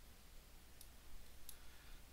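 Two faint computer mouse clicks, a little under a second apart, over a low steady hum of room tone.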